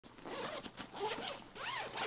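Zipper on a Canon camera bag being pulled open in a few short strokes.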